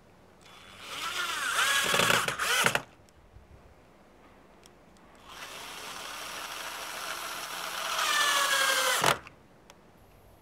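Cordless drill driving screws through a metal bracket into a wooden beam, in two runs: a short one of about two seconds and a longer one of about four seconds, each stopping abruptly. In the first run the motor's pitch dips under load.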